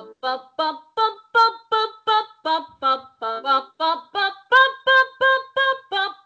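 A woman singing a staccato vocal exercise with a slight cry added, short detached syllables at about three a second, climbing in pitch and coming back down twice.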